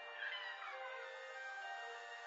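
A melody of clear, steady notes, as from a light-up animated Christmas carousel decoration, with a brief high cry gliding down in pitch about a quarter second in.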